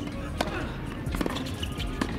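Tennis ball struck by a racket on a serve, a sharp pop about half a second in, followed by lighter ball impacts around a second later during the rally.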